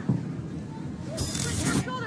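Soft, steady stadium crowd ambience from a soccer broadcast. A little past a second in, a short whoosh sound effect plays with the network's replay-transition graphic.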